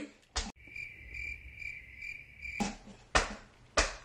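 Cricket chirping sound effect: a high, steady trill pulsing about twice a second that cuts in abruptly for about two seconds and stops suddenly. It is the 'crickets' gag marking a joke that fell flat. A few short sharp noises follow near the end.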